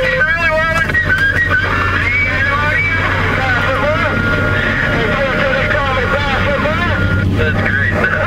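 A steady low engine hum with indistinct voices talking over it.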